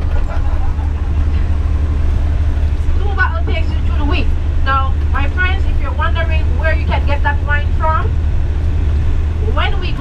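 Tour bus driving along a road, heard from inside the cabin as a steady low rumble. Voices talk from about three seconds in until about eight seconds in.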